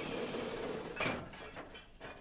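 A steady hiss like escaping steam, then about a second in a sudden clinking clatter of metal, like chains and blocks being set against the wheels, that fades within a second.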